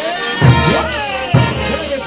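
Peruvian banda orquesta brass band playing a chutas number: brass with sliding notes over bass drum. Heavy drum strokes land about half a second in and again about a second later.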